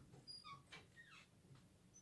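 Near silence with a few faint, short, high-pitched squeaks in the first second or so, some falling in pitch.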